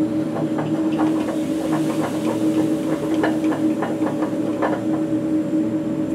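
Laboratory fume hood blower running with a steady, droning hum, with irregular small clicks over it.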